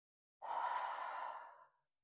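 A woman's breathy exhale through the mouth, starting sharply and tapering off over about a second, breathing out on the effort of a dumbbell overhead pullover.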